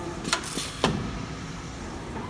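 3D CNC wire bending machine working as it bends wire into a ring: a brief motor whine, a small click, then a louder sharp clack just under a second in as the bending head moves.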